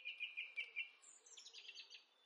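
Faint birdsong: a quick run of repeated chirps, then a short series of notes that step down in pitch.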